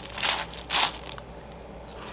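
Two short crunches from a cup of crunchy Trix cereal being eaten with a spoon, a quarter and three quarters of a second in.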